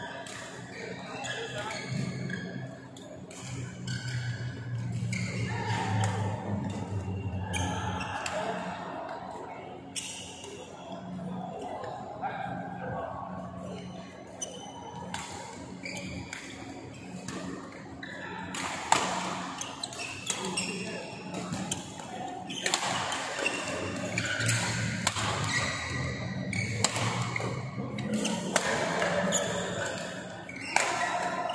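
Badminton rackets hitting a shuttlecock in sharp, irregular strikes during play, echoing in a large sports hall, with the sharpest hit about 19 seconds in.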